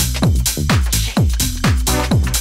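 Electronic dance music from a tech house DJ mix: a steady four-on-the-floor kick drum at about two beats a second, with hi-hats between the kicks.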